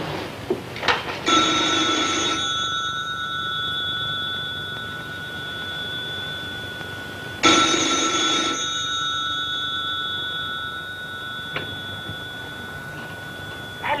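Desk telephone's bell ringing twice, each ring about a second long and about six seconds apart, with the bell's tone hanging on faintly between rings.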